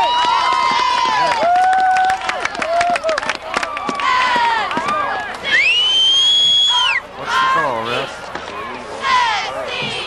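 Spectators at a high school football game shouting and calling out, several voices at once with drawn-out yells. A loud, high whistle rises and holds for about a second and a half midway through, then cuts off.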